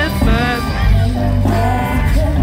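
Live amplified band with a lead singer playing a country-rock song: a sung melody over guitar and a steady bass.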